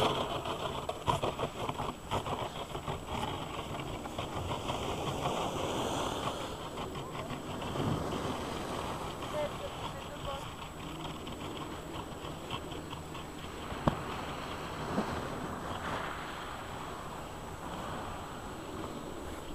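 Wind noise on a camera microphone left on a snowy slope, with faint distant voices and a sharp knock about fourteen seconds in.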